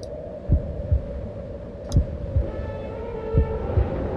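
Soft low thumps, some in pairs like a heartbeat, over a steady low hum, with a sharp click about two seconds in.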